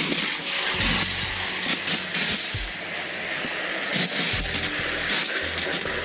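Garden hose spray nozzle switched on suddenly, jetting water into a metal bucket with a sponge in it to fill it with soapy wash water: a steady hiss of spray with a few dull thuds of water in the bucket.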